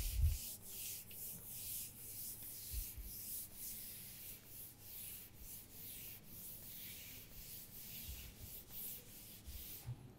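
Chalkboard being wiped with a cloth: a faint run of dry rubbing strokes, about two or three a second.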